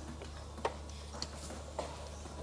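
Three light clicks or taps, a little over half a second apart, over a low steady hum.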